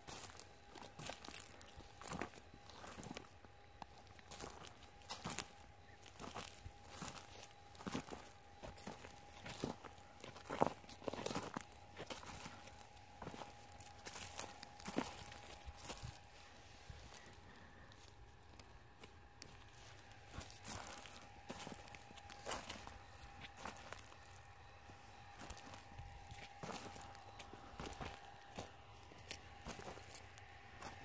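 Footsteps crunching and rustling through dry straw crop residue, irregular steps and crackles, with a few louder crunches midway. A faint steady tone sits underneath.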